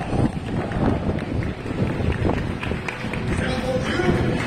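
Stadium public-address voice echoing across an open football ground, announcing players during the team introductions, over a steady low rumble.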